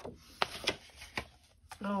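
Sheets of patterned craft paper being handled and turned over, giving four short crisp snaps and rustles.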